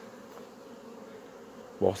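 Honeybees buzzing in large numbers around their hives, a steady hum. The colony is stirred up, flying out to take the leftover honey from supers and frames set out to be licked clean.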